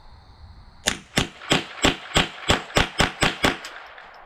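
Semi-automatic AR-style rifle fired rapidly, about ten shots at roughly three a second, starting about a second in.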